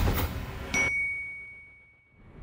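Logo sound effect: the tail of a whoosh, then, under a second in, a single bright ding that rings on as one high tone and fades away.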